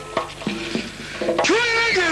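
Traditional Uzbek music: a doira frame drum is struck with a jingling rattle alongside short plucked string notes, then a male voice comes in with a long sung note about one and a half seconds in.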